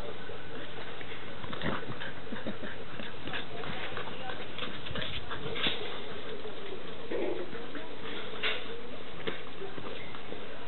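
Two Glen of Imaal Terriers playing tug-of-war with a blanket, making dog vocal sounds. Scattered short clicks and knocks run through it.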